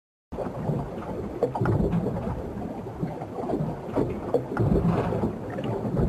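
Ambience of a wooden sailing ship at sea: a steady wash of water with scattered creaks and knocks from the hull at irregular moments.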